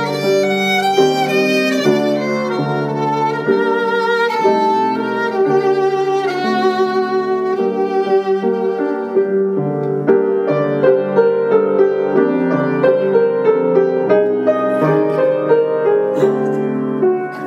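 Solo violin playing a melody of held notes with vibrato, from a simple live recording.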